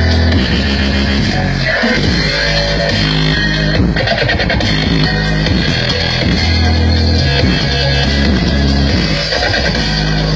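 Loud music with heavy bass played through a large stack of outdoor sound-system speaker cabinets.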